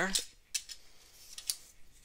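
A few faint, sharp ticks and clicks, about four spread over two seconds, from cards and clear plastic card holders being handled.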